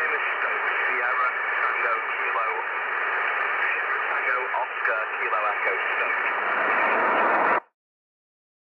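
A voice heard as if through an old radio: thin and narrow-sounding over steady hiss, cutting off suddenly near the end.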